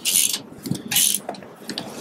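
Metal parts of a galvanised boat trailer being worked by hand: two short scraping, rattling bursts about a second apart, with light knocks between.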